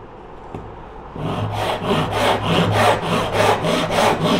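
Japanese hand saw with a coarser set of teeth cutting through a softwood block, starting about a second in. It gives quick, even rasping strokes, about five a second.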